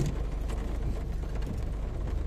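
Steady background noise inside a car cabin in the rain: a low rumble under an even hiss of rain, with a faint click at the very start.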